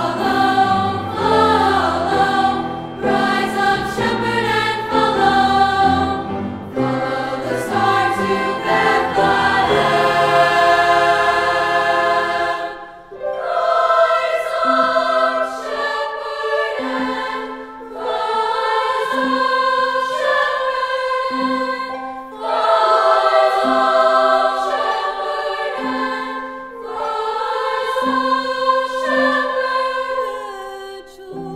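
Upper-voice girls' choir singing in parts with piano accompaniment. About midway the deep bass of the accompaniment drops away, leaving the voices over a short low note repeated at an even pace.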